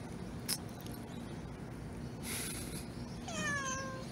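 A domestic cat meowing once near the end, a single call that falls slightly in pitch.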